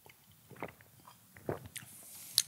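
A few faint, short mouth sounds of someone swallowing a sip of freshly squeezed orange juice.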